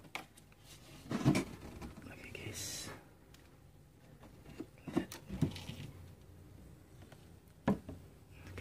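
Handling noises: a few sharp knocks and clatters as equipment is moved about and set up, the loudest about a second in, with a short hiss near the three-second mark.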